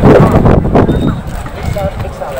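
Voices of people talking in a crowd, with a loud rough noise that covers the first second or so.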